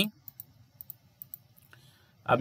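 Light clicking from a computer's controls being worked to step through images on screen: about five short, sharp clicks at uneven intervals over the first second and a half.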